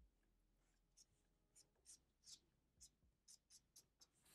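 Faint strokes of a felt-tip marker on paper: about eight short scratches, drawn in quick succession.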